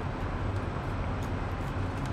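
Steady low hum and hiss of background noise, with no speech and no distinct event.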